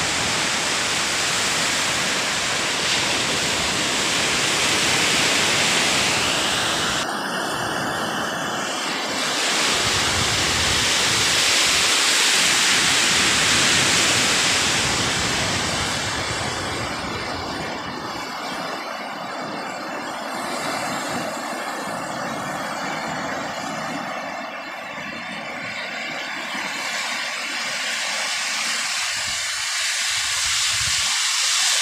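Sea waves breaking and washing up a sandy beach: a steady rushing of surf that swells about ten to fourteen seconds in, then eases.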